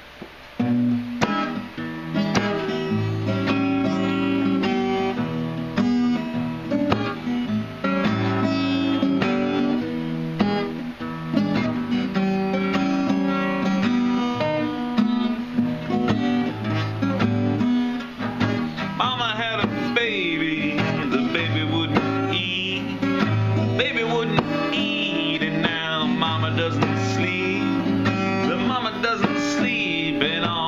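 Acoustic guitar played solo as a song intro, starting about a second in. A man's singing voice joins over the guitar about two-thirds of the way through.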